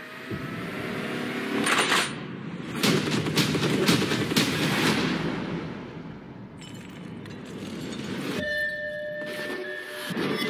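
Action-trailer sound effects: a dense rush of noise with several sharp hits, the sound of a vehicle crash and explosion, fading out and giving way near the end to a steady high electronic tone.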